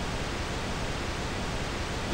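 A steady, even hiss of noise, like static, with no notes or beat: a noise texture filling a break in an electronic hip hop track.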